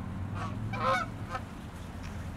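A flock of geese in flight honking: three short honks, the middle one loudest, over a low steady rumble.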